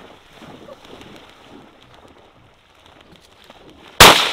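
Faint water splashing in a flooded marsh, low and fairly steady.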